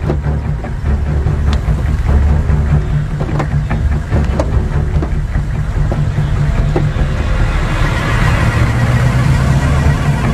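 A motor vehicle's engine running steadily under background music, with a continuous low rumble and occasional clicks.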